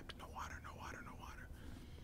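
A man whispering faintly under his breath, with no full voice: only the hushed, breathy shapes of words.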